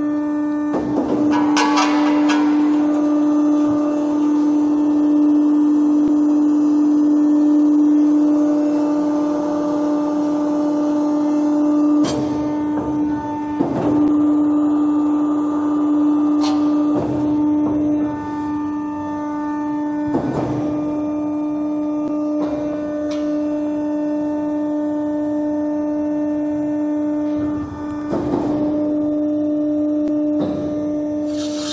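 RMT R-SMART four-roll plate roll running its automatic NC cycle while bending a steel plate into a ring. Its drive gives a steady humming tone, broken by a series of knocks and clunks several seconds apart as the rolls move and the plate bends.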